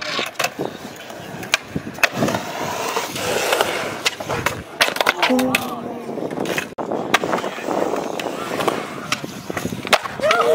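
Skateboard wheels rolling on concrete, with repeated sharp clacks and knocks of boards striking the ground.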